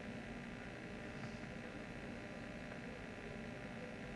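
Faint steady hiss and electrical hum of the hall's sound pickup, with no speech.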